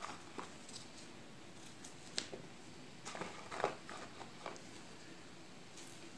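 Faint, scattered clicks and taps of a kitchen knife cutting garlic cloves in half over a small plastic bowl.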